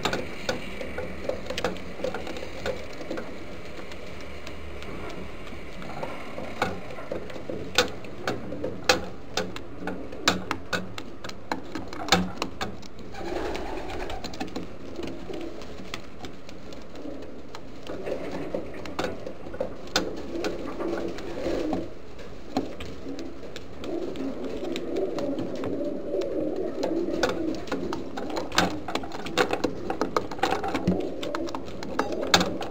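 Homing pigeons cooing in a loft, a low murmuring coo that grows fuller through the second half. Scattered sharp taps and clicks sound throughout, most of them in the first half.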